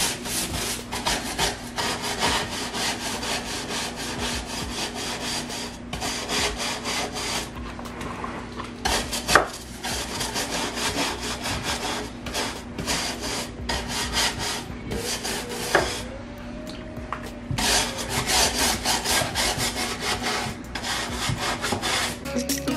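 Scrub brush scrubbing back and forth across the painted wooden slats of a slatted table in rapid strokes, with a few short pauses, cleaning the dirt from between the slats.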